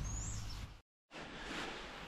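Faint, steady outdoor background noise, broken by a moment of total silence about a second in where the recording is cut.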